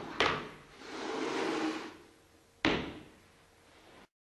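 Handling noises on a wooden set: a sharp knock at the start and another just after, a longer rustling scrape through the middle, and a third sharp knock about two and a half seconds in, like a drawer or door being opened and shut.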